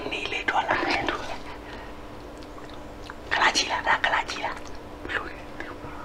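A man whispering in a few short, breathy phrases, with pauses between them.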